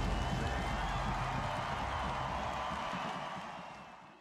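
Crowd cheering and clapping, a dense even noise with faint whistle-like lines, fading out near the end.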